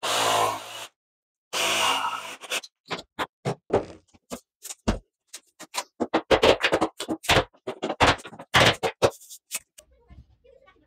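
Jigsaw cutting into a laminate plank in two short runs, then a string of irregular hammer taps, about two or three a second, on a tapping block, knocking a laminate plank tight into its click joint.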